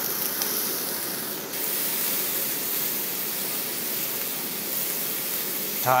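Chopped onion and green onion sizzling in hot oil in a frying pan: a steady hiss that dips briefly about one and a half seconds in.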